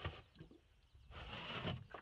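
Blue plastic water jug scraping against its plywood cubby as it is pulled out: a faint rubbing sound starting about a second in and lasting under a second.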